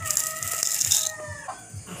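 Dry rustle of rolled oats poured from a glass into a ceramic bowl, lasting about a second. Under it, a long held animal call sounds in the background and fades out about a second and a half in.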